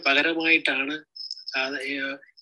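A man speaking in Malayalam, with a short pause about a second in where a thin, high-pitched steady tone is heard.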